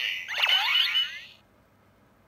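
Electronic toy sound effect from a small speaker: a burst of chirpy, gliding tones that stops about a second and a half in.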